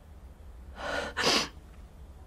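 A young woman's breath: a short breath in about three-quarters of a second in, then a sharp, louder burst of breath out.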